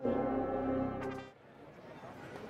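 A brass ensemble's music ending on one long held chord, which dies away about a second and a half in. Faint crowd noise follows.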